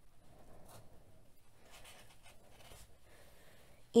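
Faint scratchy rustling of bulky yarn dragging through a tight button hole and the crocheted fabric as a yarn needle pulls it through.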